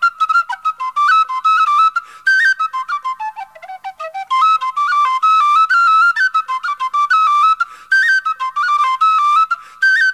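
Solo tin whistle playing a traditional Irish jig: a quick, unbroken run of short notes in a high register, dipping to its lowest notes about three seconds in.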